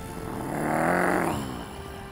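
Tiger growl sound effect: one growl of about a second and a half that swells and then fades.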